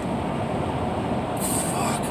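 Steady engine and road rumble inside a moving vehicle's cabin. Near the end comes a brief hissing rustle, as of hands rubbing across the face and beard.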